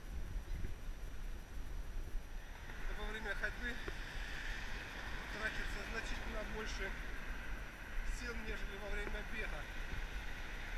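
Wind rumbling on the microphone of a camera carried by a man walking briskly, with a fainter hiss and short chirps joining about two and a half seconds in.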